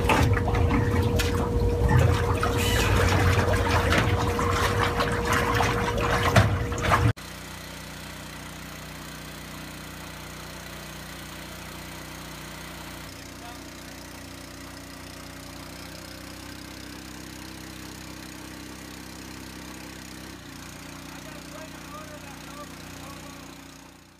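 Water sloshing and splashing in a stock tank as a pump's suction hose and foot valve are thrust back and forth by hand to prime the pump. About seven seconds in, the sound cuts to a quieter steady hum.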